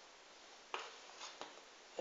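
Knife cutting dough taps against a metal baking tray: one sharp tap about three-quarters of a second in, then two fainter knocks, over quiet room tone.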